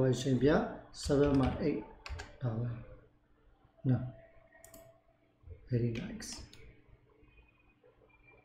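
A man's voice in short phrases, with a few sharp clicks of a computer keyboard and mouse between them.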